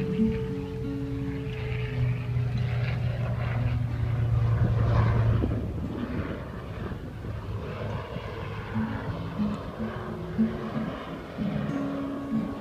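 Acoustic guitar playing an instrumental passage between sung verses. A low engine drone swells up in the middle, loudest about five seconds in, and fades away before the guitar notes come through clearly again near the end.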